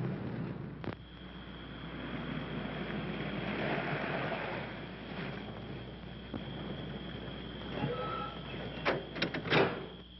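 A 1930s convertible car's engine runs as the car drives off, on an old film soundtrack. A steady high whine runs under it, and a few sharp knocks and clicks come near the end.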